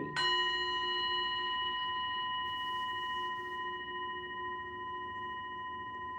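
Brass singing bowl struck just after the start, then ringing on in several steady overtones that fade slowly.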